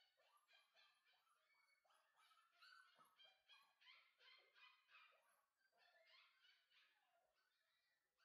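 Faint, rapid high-pitched whimpers and squeaks from a Bordoodle puppy, several a second, easing off near the end.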